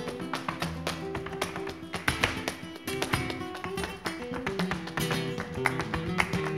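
Flamenco guitar playing a granaína, with sharp, irregular taps of the dancer's shoes on the stage floor cutting across it.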